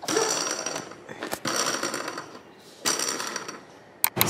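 Plastic baby activity-center toys rattling and clicking rapidly, in three short bursts as they are handled.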